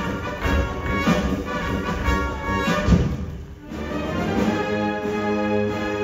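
Orchestra playing a ballet score, with strong, heavy beats over the first three seconds. The music dips briefly about three and a half seconds in, then settles into sustained chords.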